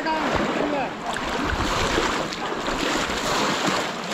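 Shallow pond water sloshing and splashing around people wading through it, with voices in the background.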